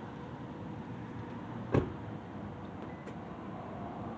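Steady low background rumble with a faint hum, broken once, a little under two seconds in, by a single short thump.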